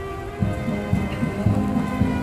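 Military band music heard faintly, with wind buffeting the microphone in irregular low rumbling thuds from about half a second in.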